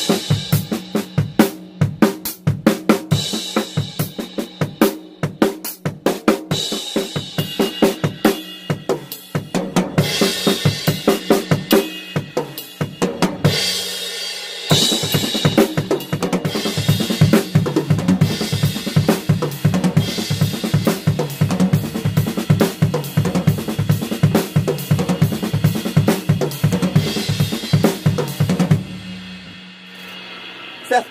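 Acoustic drum kit played fast: double strokes moved around the snare and toms over bass drum and cymbals. The playing breaks off briefly just before halfway, resumes, and stops about a second before the end, leaving cymbals ringing out.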